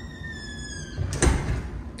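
Front door squeaking as it swings, a long high squeal that slowly falls in pitch, then a thump about a second in.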